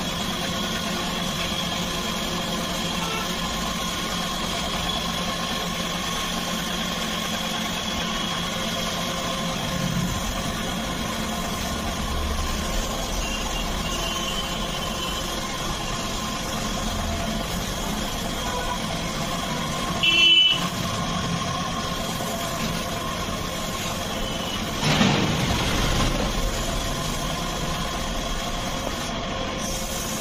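Steady mechanical hum of a running motor under the air hiss of a gravity-feed spray gun laying paint onto a motorcycle fuel tank, with brief louder bursts about twenty and twenty-five seconds in.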